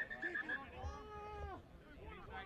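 A person's long drawn-out shout on the field, held for about a second, among other short calls from players and onlookers.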